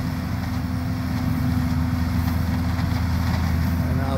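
City leaf vacuum truck running, a steady drone of its engine and vacuum blower with a constant low hum, as its large hose sucks up a curbside pile of leaves.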